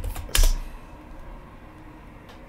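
Computer keyboard keystrokes: a couple of light taps, then one loud key press about half a second in, the Enter key running a typed shell command.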